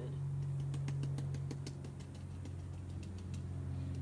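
A steady low machine hum, like an idling engine, with faint scattered clicks over it.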